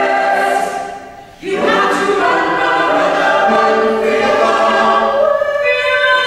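Mixed vocal ensemble singing sustained chords in close harmony. The sound dies away briefly about a second in, then the full group comes back in.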